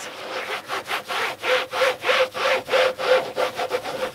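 A cloth scrubbed briskly back and forth over the square plastic drills of a diamond painting, wiping excess Mod Podge sealer off the drill tops: rhythmic rubbing strokes, about two to three a second.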